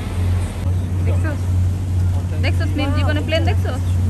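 Passenger boat's engine running with a steady low hum, with voices talking over it.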